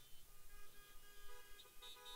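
Faint car horns honking: several steady tones at different pitches sound together, with more joining near the end.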